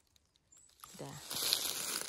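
Dry leaf litter rustling and crackling as a gloved hand pushes into it, starting about a second in after a near-silent moment.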